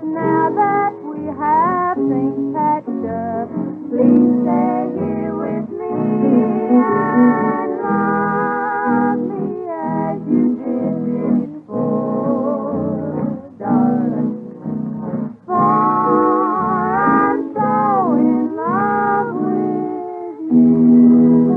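Instrumental country string-band music with a lead melody line bending and wavering in pitch over steady chordal accompaniment and low bass notes, with the dull, narrow sound of an old transcription-disc recording.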